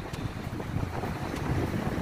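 Strong wind buffeting the microphone as an uneven low rumble, over the rush of heavy storm surf breaking on the shore.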